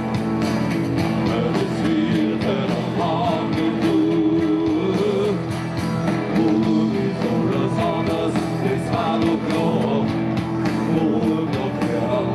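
Live rock band music: an instrumental passage between sung lines, with guitars and drums playing on.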